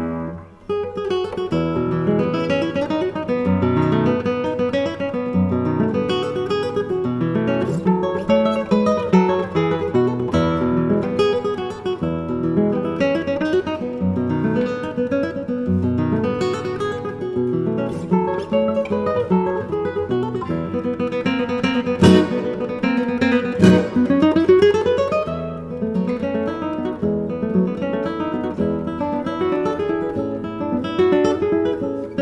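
Solo classical guitar playing, a 2020 Wolfgang Jellinghaus "Torres 43" with spruce top and maple back and sides, nylon strings plucked in a dense run of notes. A little past the middle come two sharp struck chords, the second followed by a rising slide up a string.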